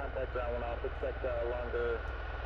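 A thin, narrow-sounding voice over a radio, repeating numbers, over a steady low rumble from the landing RC-135's jet engines.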